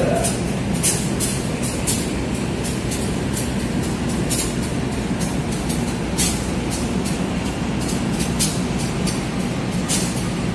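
KA Jayabaya passenger coaches rolling slowly along the track. A steady low rumble runs under frequent short clicks and knocks, two or three a second.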